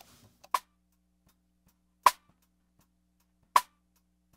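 Snare drum rim clicks (cross-stick) heard through the snare-bottom microphone alone: three dry, isolated clicks about a second and a half apart.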